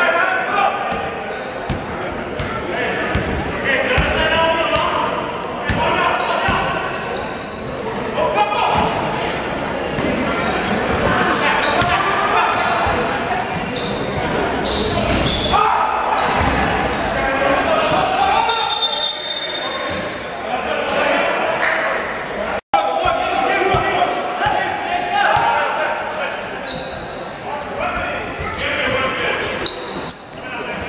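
Basketball game in a gym: a ball bouncing on a wooden court with repeated sharp impacts, under steady echoing voices of players and spectators in the hall.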